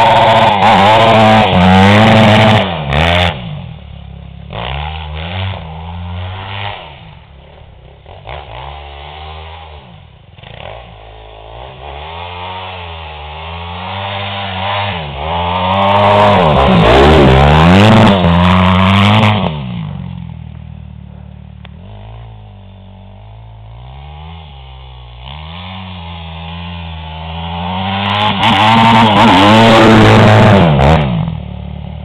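Yamaha dirt bike engine revving up and down as it is ridden, loudest in three close passes: at the start, about halfway through, and near the end, with quieter, fading revs between as it rides farther off.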